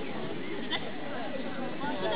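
People's voices: overlapping talking and calling from handlers and spectators, with a short, wavering high call near the middle.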